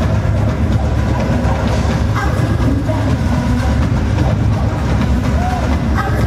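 Live pop dance music played loud through an arena sound system, with heavy bass, recorded from the crowd.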